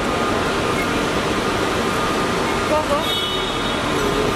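Steady background din of a busy airport kerbside: traffic and crowd noise with indistinct voices. A short high tone sounds about three seconds in.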